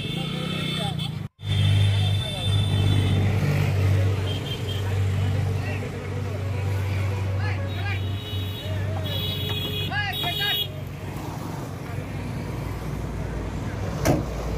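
A vehicle engine idling with a steady low hum, with people's voices around it. There are short high-pitched tones near the start and again around nine to ten seconds in.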